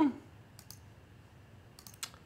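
Computer mouse clicking: two clicks about half a second in, then a quick run of three or four near the end.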